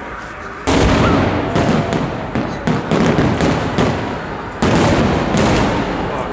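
Aerial fireworks shells bursting overhead: a loud boom less than a second in, then rapid popping and crackling, and a second loud boom over four seconds later.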